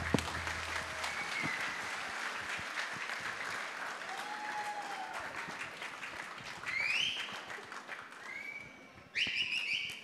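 A large audience applauding after a song, the clapping slowly dying away, with a few short whistles that rise and fall. A brief high tone sounds near the end.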